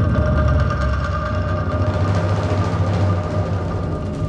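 Film background-score cue: a dense low rumble that flickers steadily, under high tones held without a break.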